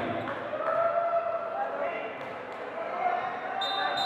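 Echoing indoor basketball court during a stoppage in play: indistinct voices carry through the hall, with a few faint knocks of a basketball bouncing on the hardwood-style court.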